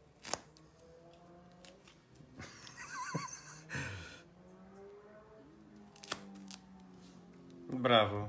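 Small scissors snipping through tape and a foam backer-rod post: a sharp snip near the start, rasping cuts a few seconds in, and another snip about six seconds in. A faint wavering pitched sound runs underneath.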